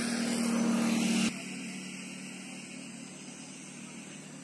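A motor's steady hum that grows louder, then drops off abruptly just over a second in, leaving a fainter hum.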